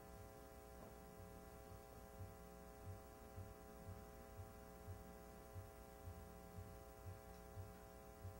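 A faint steady hum. From about two seconds in, a soft low thump repeats about twice a second.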